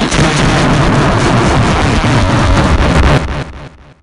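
A loud, harsh blast of noise with a deep rumble, an explosion-like sound effect. It holds for about three seconds, then fades out and stops just before the end.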